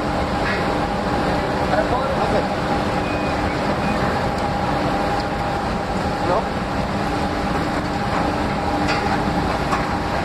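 Steady industrial machinery noise at an iron-pellet rotary kiln's discharge end: a dense, continuous rumble with a steady hum running through it, along with the hot pellets pouring down into the cooler.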